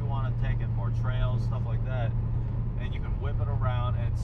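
Steady low drone of a car's engine and exhaust heard from inside the cabin while cruising; the exhaust has had its mufflers removed.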